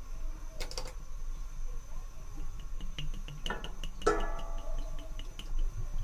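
Cooking oil poured from a glass bottle into an empty stainless steel pot: a quiet pour with a run of small light ticks and a couple of brief ringing tones through the middle.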